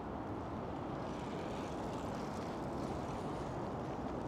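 Steady, low-pitched outdoor background noise with no distinct events.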